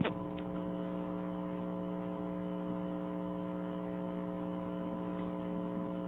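Steady electrical mains hum, several fixed tones buzzing together, with a single short click at the very start.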